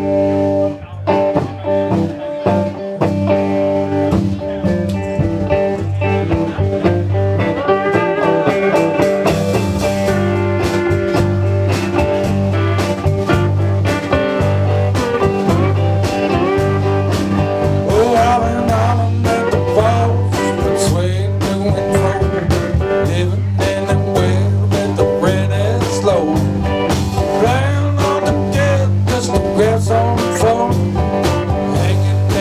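Live blues band playing an instrumental intro with electric guitar, electric bass, keyboard, drums and a lap steel guitar. Gliding slide lines sound over a steady bass line and beat.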